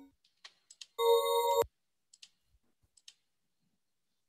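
A short burst of ambient electronic music from the artwork's demo clip, a held chord of several steady tones. It plays for about half a second starting about a second in, then cuts off abruptly with a click. A few faint clicks come before and after it.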